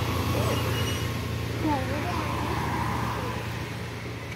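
A motor vehicle's engine running nearby with road noise, a steady low hum that slowly fades, with voices faintly over it.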